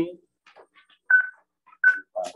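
Two short electronic beeps at the same high pitch, about three-quarters of a second apart, in a pause between spoken words.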